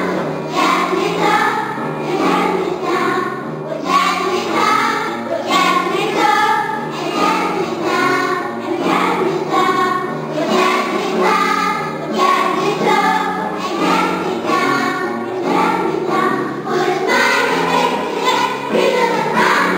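A young children's school choir singing a song together.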